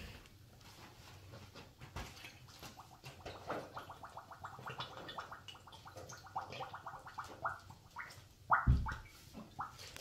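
Vinegar glugging out of an upturned plastic bottle into the balloon on its neck: a quick run of bubbling gulps that slows and spreads out near the end. A low thump about eight and a half seconds in.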